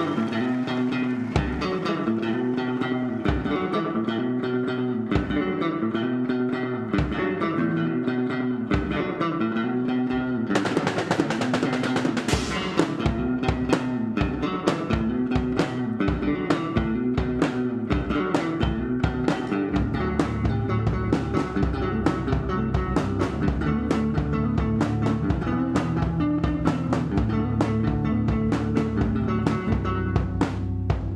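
Live rock trio playing an instrumental intro on electric guitar, bass guitar and drum kit: a repeating riff, then a cymbal crash about ten seconds in brings the full drum beat in. The low end grows heavier about twenty seconds in.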